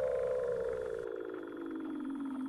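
A seal call: one long trilled note gliding steadily down in pitch.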